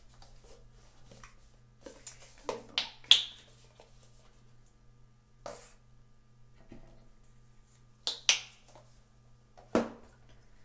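Sharp clicks and taps from painting tools and a paint tube being handled over a palette tray, about seven in all, the loudest about three seconds in.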